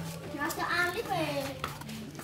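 People talking in the background, with no clear words.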